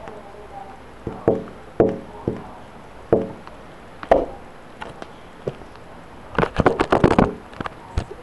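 A series of sharp knocks and clicks with short ringing tails, then a quick rattling run of them about six and a half seconds in.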